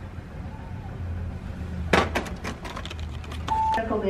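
Shop interior ambience: a steady low hum, a few sharp clicks about two seconds in, and a short electronic beep near the end.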